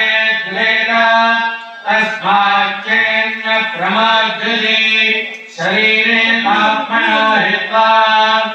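Hindu priests chanting Sanskrit Vedic mantras in a steady, pitched recitation. The chant runs in long phrases with two short breaks, about two seconds in and just past halfway.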